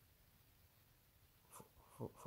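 Near silence: faint room tone, with one brief soft sound near the end.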